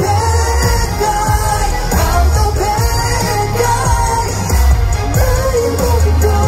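Live pop performance over a concert PA: a male vocalist singing into a microphone over a loud backing track with heavy, pulsing bass.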